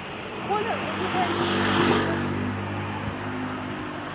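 A motor vehicle passes along the street, its engine hum and tyre noise swelling to a peak about two seconds in and then easing off.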